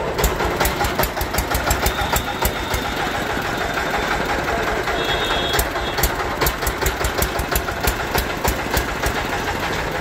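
Small green single-cylinder stationary diesel engine running steadily, with a regular thudding beat of about four strokes a second.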